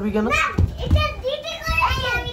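Mostly children's voices: young children talking and calling out, with a few low thumps from their play.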